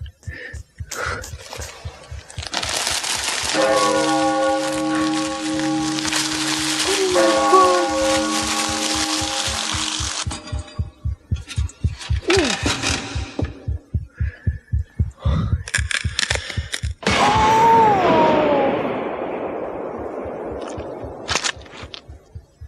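Comedy-sketch soundtrack of a hangover: a rapid, even heartbeat thumping all through, under exaggeratedly loud kitchen noises. There is a long hissing rush with held tones over it, a falling whoosh, a burst of sharp clicks, then another loud rush that fades away, everyday sounds blown up to show how painful they are to a hungover ear.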